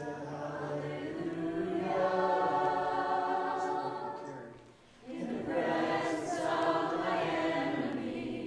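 Voices singing a slow worship song in two long phrases of held notes, with a short break between them about five seconds in.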